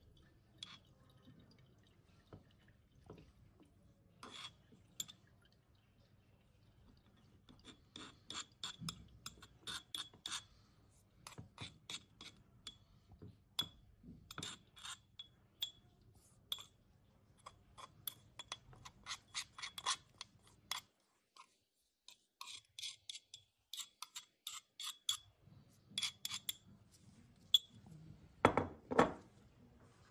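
Metal spoon scraping and clinking against a ceramic bowl and ceramic filter funnel as wet chopped radicchio is scooped into the filter: a long run of small irregular clinks and scrapes, with a few louder knocks just before the end.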